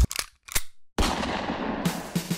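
Produced intro sound effects: two sharp bangs about half a second apart, then a short silence and a sudden loud rush of noise that fades in its upper range. An electronic music beat starts near the end.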